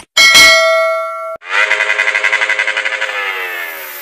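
Subscribe-button animation sound effects. A bright ding comes in just after the start and cuts off about a second later. It is followed by a rapidly pulsing, bell-like ringing that falls slowly in pitch and fades.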